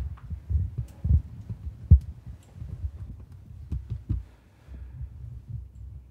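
Handling noise on a handheld camcorder being moved and set up: irregular low thumps and rumbling, with a few faint clicks.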